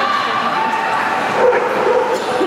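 A dog barking and yipping in a large indoor hall, over a background of crowd chatter.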